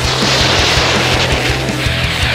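Background music with a steady beat, over a missile fly-by sound effect: a rushing whoosh that falls in pitch.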